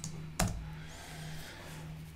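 Two computer keyboard key clicks, a light one at the start and a sharper one about half a second in, over a steady low hum.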